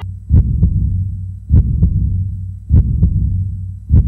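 Heartbeat sound effect: four pairs of low double thumps, one pair about every 1.2 seconds, over a steady low hum.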